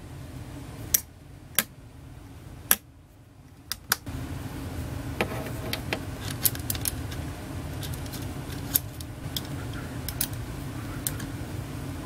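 Sharp metallic clicks and clinks of small AR-15 upper-receiver parts being handled and fitted back together by hand, a few separate clicks in the first four seconds and more scattered ones after. A low steady hum sits underneath from about four seconds in.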